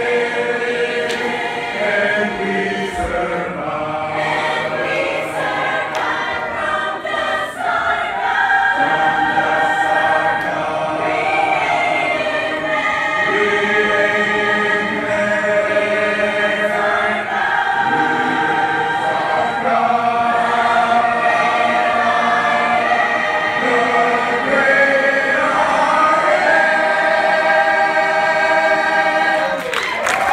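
Church congregation singing a hymn in harmony, in long held chords that move together every second or two.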